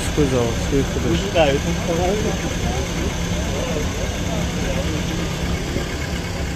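Voices talking over a steady low hum of an idling car engine.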